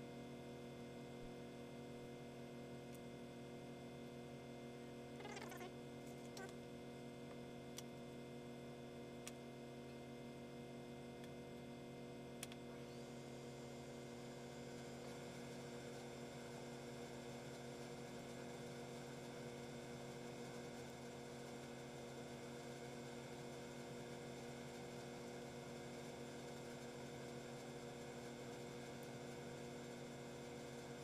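A steady, faint hum made of several held tones, like running machinery or mains hum. Over it come a few faint clicks of scissors snipping a sheet of rubber, between about five and thirteen seconds in.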